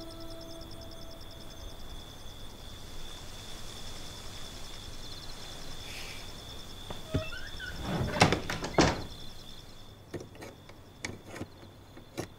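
A glass-panelled wooden door being handled: a rattle and two loud knocks about eight seconds in, then a few sharp clicks of its metal latch. Under it, a steady high chirring of night insects.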